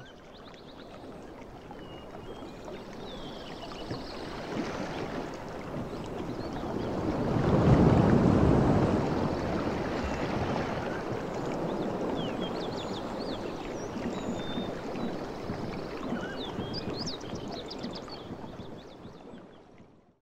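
A rushing ambient noise that fades in, is loudest about eight seconds in, then fades out near the end, with short high chirps over it near the start and again near the end.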